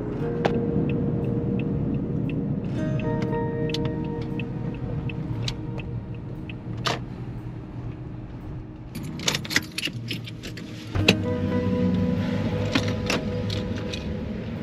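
Car running on the road, heard from inside the cabin as a steady low road and engine noise, under background music with held notes. About nine to eleven seconds in, a cluster of sharp clicks and knocks sounds as the car is parked and the driver's door is opened.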